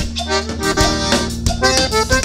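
Live conjunto band playing: a button accordion carrying a run of quick notes over a drum kit keeping a steady beat, with bass underneath.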